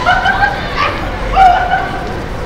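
Women startled by someone jumping out from behind a planter, letting out two short, high yelps of fright.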